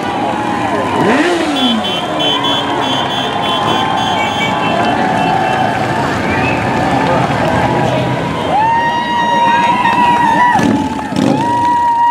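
Police motorcycles passing slowly, engine sound falling in pitch about a second in, over crowd chatter and shouts. There are short repeated high beeps early on, and two long steady tones near the end.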